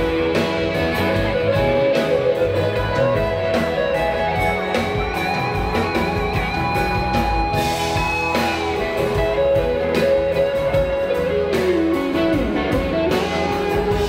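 Live band playing a guitar-led passage, with long sustained lead notes and a note bending down in pitch near the end.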